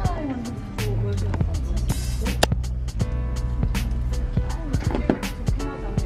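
Background pop music with a steady drum beat, a bass line and a singing voice.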